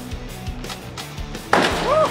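A scrapped car dropped from a crane's grapple hits the dirt ground with a single loud crash about one and a half seconds in, over background music. A short rising shout follows the impact.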